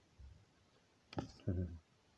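Mostly quiet, with one sharp click a little over a second in, followed straight away by a short wordless vocal sound from a man, like an 'äh' or 'hm'.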